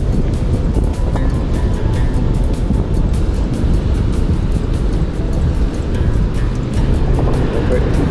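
Steady, loud low rumbling noise of beach surf and wind, with music playing over it.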